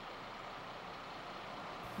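Street traffic: a car driving by, a steady rush of engine and tyre noise.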